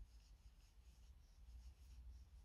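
Near silence: faint, soft, repeated rustling of yarn being drawn through and over a metal crochet hook as stitches are worked.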